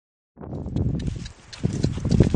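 People and donkeys walking on a dirt track: footsteps and hoof steps, starting suddenly out of silence about a third of a second in, with a short lull about halfway through.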